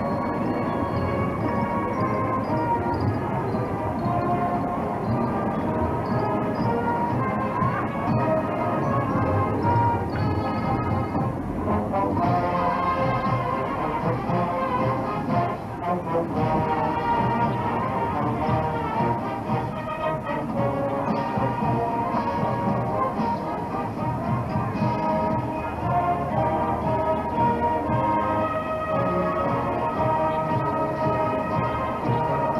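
High school marching band playing a march on the field: brass and clarinets in full band sound, steady and loud throughout.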